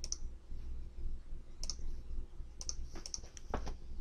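Computer mouse and keyboard clicks: several short, sharp clicks spaced irregularly, bunched more closely in the second half, over a faint steady low hum.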